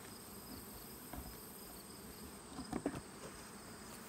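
Honeybees buzzing around open beehives, a faint steady hum, with a few light knocks about three seconds in as the wooden hive boxes are handled.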